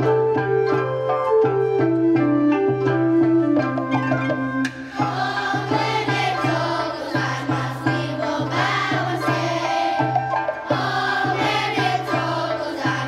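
Elementary-school children's chorus singing a holiday song with instrumental accompaniment. The accompaniment plays a short introduction of notes stepping down in pitch, and the children's voices come in about five seconds in.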